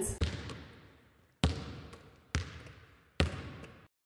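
A basketball bouncing four times on a hard floor, each bounce with a short ringing tail and the bounces coming slightly closer together.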